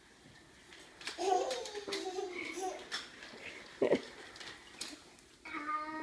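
A young child babbling without clear words, in short rising and falling vocal runs, with a brief sharp sound just before four seconds in.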